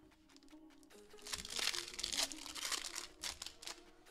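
Foil wrapper of a Pokémon GO booster pack being torn open and crinkled, the crackling starting about a second in and running for roughly three seconds, over quiet background music.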